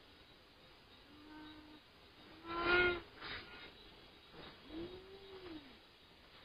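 Three drawn-out pitched calls, like an animal's. The loudest comes about halfway through, and the last one rises and then falls in pitch.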